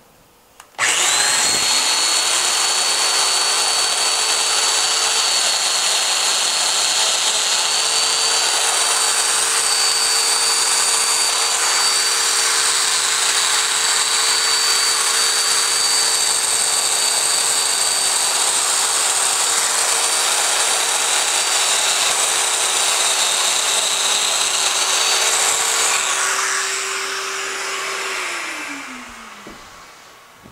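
Festool Domino joiner running steadily while cutting mortises in the edge of a board, a steady motor tone with a high whine. It starts abruptly about a second in and winds down with a falling pitch near the end.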